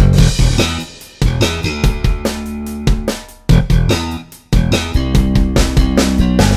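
Rock music with electric guitar, bass guitar and drum kit, playing a stop-start riff that cuts out suddenly about a second in, holds a chord, drops out again past the middle and comes crashing back in.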